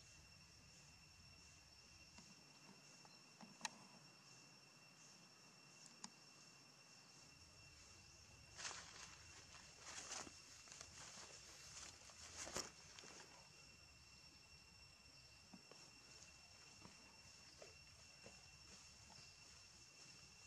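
Faint outdoor ambience: a steady, high-pitched insect drone, with two sharp clicks in the first few seconds. A few seconds of rustling and crackling come around the middle.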